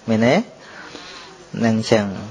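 Speech only: a monk preaching in Khmer. There are two drawn-out syllables, one at the start and one near the end, with a pause of about a second between them filled by a steady hiss.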